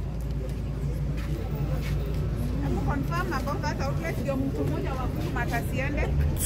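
People's voices talking in short stretches, about halfway through and again near the end, over a steady low rumble.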